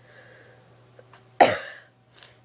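A woman coughs once, sharply, about one and a half seconds in, after a soft breath.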